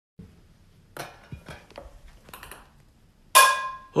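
A few faint light taps and clicks. Then, about three seconds in, a sharp metal clang from a struck pan that rings and fades.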